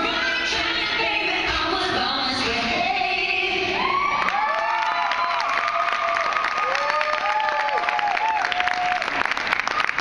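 A song with a singer plays for about four seconds. Then the crowd cheers, whoops and claps.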